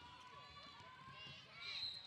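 Faint sneaker squeaks and running footsteps on a hardwood basketball court as players sprint up the floor on a fast break; short wavering squeals come and go.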